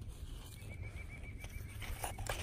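A bird's rapid trill: a run of short high notes, about six a second, lasting about a second and a half, over a low steady rumble. Near the end, a stone knocks on gravel.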